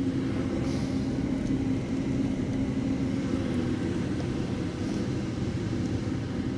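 A steady low hum with no distinct events, the sound of machinery or electrical hum under a quiet room.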